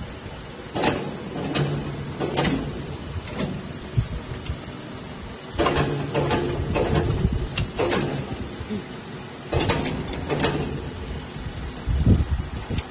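Metal clattering and rattling from steel parts and bolts being handled and fitted onto a steel frame, in three bursts of knocks about four seconds apart, over a steady workshop background.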